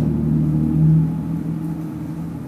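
A low, steady mechanical hum with a few pitched tones, swelling about a second in and easing off toward the end.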